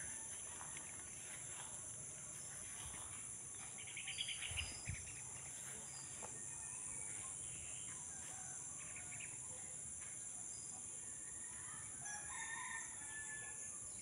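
Steady high-pitched drone of insects, with a rooster crowing and a few short bird calls over it a few seconds in.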